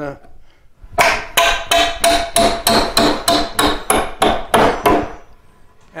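Curved claw hammer struck in a rapid series against a three-and-a-half-inch nail in an old wooden joist, about fourteen sharp blows at roughly three a second, each with a short metallic ring. This is the claw being driven repeatedly under the nail head to work it out.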